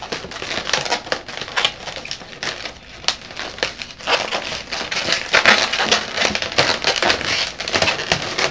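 260 latex twisting balloons rubbing and creaking against each other and the hands as they are twisted and tied together: a rapid, irregular run of crinkles and creaks, busier in the second half.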